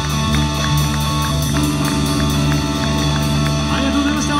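Live three-piece rock band playing: electric bass, electric guitar and drum kit, with regular cymbal strokes keeping a steady beat.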